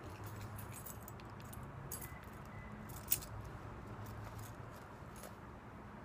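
Faint steady background noise with a few light clicks and ticks scattered through it, one sharper click about three seconds in.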